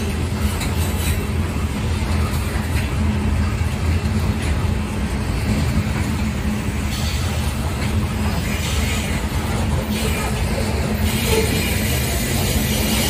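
Covered grain hopper cars of a freight train rolling steadily past, a continuous rumble of steel wheels on rail.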